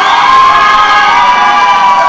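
Spectators cheering and shouting loudly, many high voices at once. The cheer breaks out suddenly just before and starts to die down near the end.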